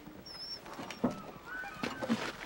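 Carriage horses' hooves clopping a few times.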